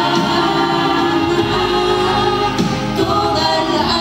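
A woman singing a gospel worship song into a microphone over musical accompaniment, with other voices singing along.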